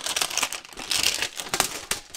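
Plastic shrink wrap being pulled off a metal tin and crumpled by hand, a dense irregular crinkling and crackling.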